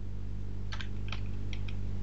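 Computer keyboard typing: a quick run of about ten keystrokes starting just under a second in, over a steady low hum.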